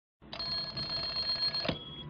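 A steady electronic ringing tone with several fixed pitches, lasting about a second and a half and cut off by a sharp click, then a faint high tone lingering: an edited intro sound effect over the title card.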